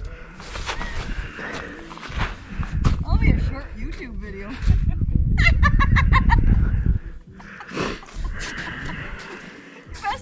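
Distant voices and a high shout carrying across open ice, with a low rumble of wind on the microphone for about two seconds in the middle.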